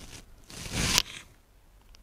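A brief rustling swish of a knitted Shetland wool waistcoat being handled and repositioned. It builds for about half a second and cuts off about a second in.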